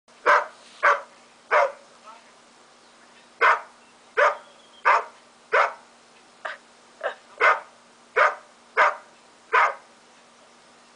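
A dog barking: about thirteen short, sharp barks at a rate of one or two a second, with a pause of over a second about two seconds in, over a faint steady hum.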